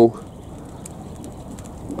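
Steady low rushing of a large stack of straw bales burning, with a few faint crackles.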